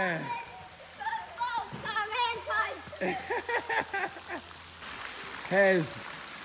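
Children's voices calling and shouting in short, high calls, with one louder call near the end, over the faint steady splashing of a fountain.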